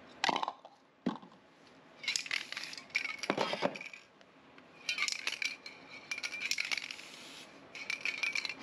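Aerosol spray paint cans hissing in short bursts of a second or two, with a few dull knocks of cans and stencils being handled between them.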